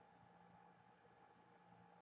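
Near silence: room tone with a faint steady electrical hum.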